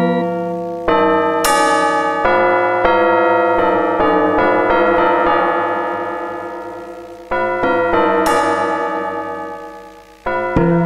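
Korg AG-10 General MIDI sound module playing atonal, overlapping keyboard-like notes under MIDI control from a synthesizer program. A new note starts roughly every half second and each dies away slowly. The sound fades through the middle, then a fresh bright cluster of notes comes in about seven seconds in and fades again.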